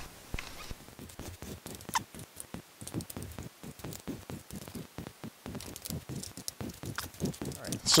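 Screwdriver backing Phillips screws out of a plastic central-vac hose handle: a long run of small, quick clicks and ticks.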